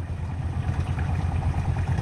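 A small engine running steadily with a low drone.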